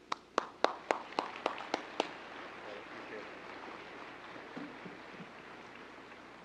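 Audience applauding. A run of about eight loud claps close by, about four a second, stands out in the first two seconds over steady applause from the crowd, which tapers slightly.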